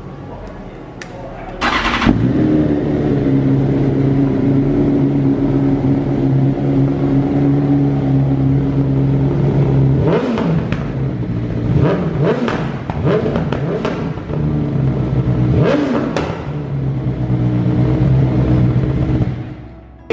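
BMW S1000RR's inline-four engine starting about two seconds in and settling into a steady idle. Throttle blips bring the revs up and down in a cluster about halfway through and once more a few seconds later.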